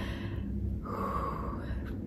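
A woman's quiet, breathy gasp of mock shock, a soft rush of breath about a second in, over a low steady room hum.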